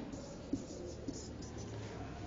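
Quiet classroom room tone with a single soft click about half a second in.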